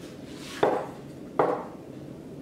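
Two sharp knocks of wood on wood, about a second in and again near the end, each with a short ring.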